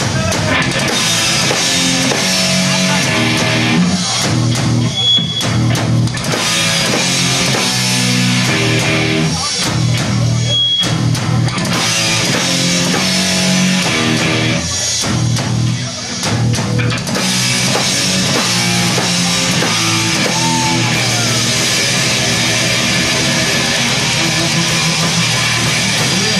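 Live crossover thrash band playing at full volume: distorted electric guitar riffs over bass and a drum kit, recorded on a camcorder in the audience.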